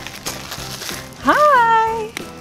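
Soft background music, then about a second in a woman's long, drawn-out exclamation that rises and then falls in pitch.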